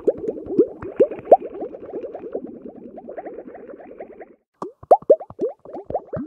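Rapid, irregular plopping and bubbling, like liquid bubbling, with many short pitched plops a second. It breaks off briefly after about four seconds and resumes as a few louder, separate plops.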